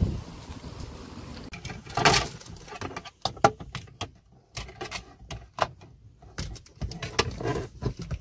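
Short clicks, knocks and rustles of hands working the overhead sunglasses compartment in a car's roof console and moving about the front seat, with one louder knock about two seconds in.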